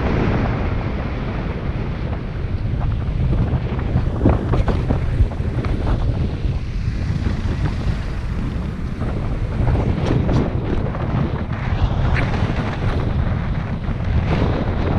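Wind buffeting the microphone of a camera mounted on the outside of a moving car, a steady low rumble with scattered crackles.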